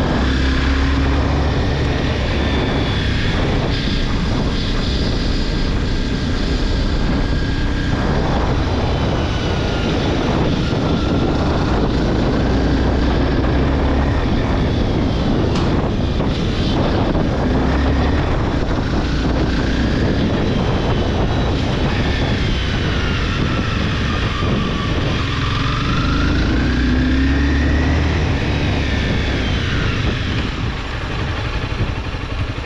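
Honda CBR250R's single-cylinder engine running under way, its pitch rising and falling as the rider works the throttle, over a steady rush of riding noise.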